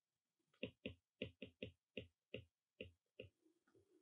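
Faint stylus tip tapping and clicking on a tablet's glass screen while handwriting a word: an uneven run of about ten small clicks, roughly three a second, starting about half a second in, with a short lull near the end.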